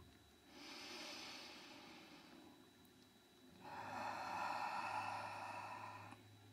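A woman's slow audible breathing close to the microphone: two faint breaths, the second louder and longer, in a calm, natural meditation rhythm.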